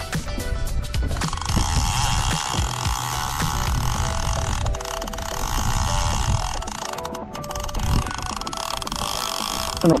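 Background music for about the first second, then a steady mechanical whirring from a fishing reel working under the load of a big fish.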